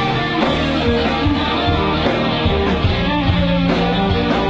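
Live rock band playing loud and steady: electric guitars over a drum kit.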